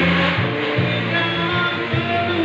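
Small live band playing an instrumental passage of a rock ballad: bass guitar, guitars and cajon, with little or no singing.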